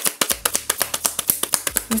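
A deck of tarot cards being shuffled by hand: a rapid, even run of sharp clicks, about ten a second.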